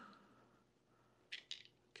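Near silence with two short, faint clicks a little over a second in: the stainless steel through-bolt knocking against the transducer mount as it is worked toward the hole.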